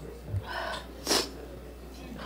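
Faint mouth and breath noises picked up by a hearing-room microphone: a soft vocal sound about half a second in, then a short sharp hiss of breath just after a second.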